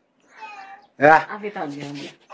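Wordless voice sounds: a faint short call about a third of a second in, then a louder, drawn-out vocal sound from about a second in.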